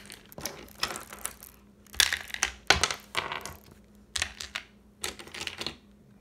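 Small pebbles and wooden toy train cars clattering and clicking as they are handled by hand, in an irregular run of sharp clicks and short rattles, the loudest about two and three seconds in.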